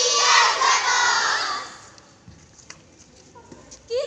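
A group of young women chanting a cheer in unison, loud for about the first second and a half, then breaking off. A short lull with a few faint clicks follows before the voices start up again at the very end.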